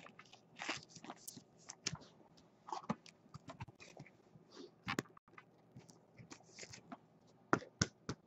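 Trading cards and pack wrappers being handled: faint scattered rustles and small clicks, with one sharper snap about five seconds in.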